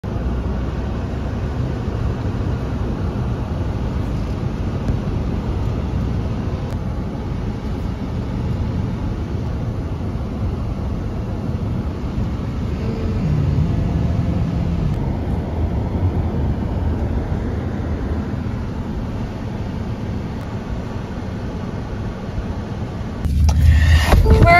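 A car being driven, heard from inside the cabin: a steady low rumble of road and engine noise, swelling slightly about halfway through.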